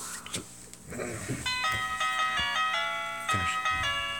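Elmo's Piano sound book's electronic keyboard playing a simple tune in steady, beeping piano-like notes, starting about one and a half seconds in.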